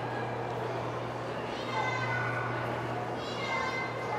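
Shopping-mall background: a steady low hum under the murmur of distant voices, with two short high-pitched calls, about a second and a half in and again near the end.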